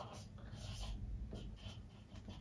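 Marker pen drawing on a whiteboard: a few short, faint scratching strokes.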